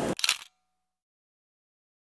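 A camera-shutter sound effect: one quick double click right at the start.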